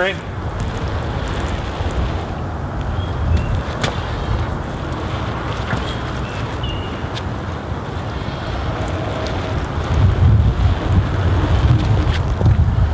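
Water from a watering can pattering onto a spun-bonded polyester row cover over a garden bed, under a steady rumble of wind on the microphone that grows stronger near the end.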